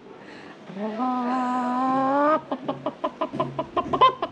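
A man imitating a wounded hen with his voice: one long drawn-out squawk, then a fast run of clucks.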